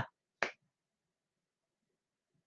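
Near silence in a pause of a lecture, broken once, about half a second in, by a single short click-like sound.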